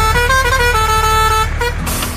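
A vehicle horn playing a tune of held notes that step up and down in pitch, over a steady low engine-like rumble; the tune stops about a second and a half in.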